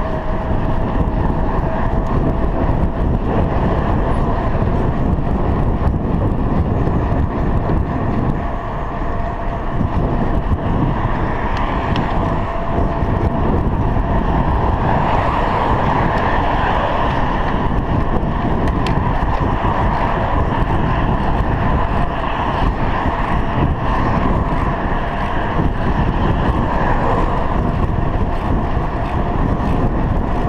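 Wind rumbling over a chest-mounted action camera on a moving bicycle, mixed with tyre noise on asphalt, with a thin steady whine running underneath. The noise swells for a few seconds around the middle.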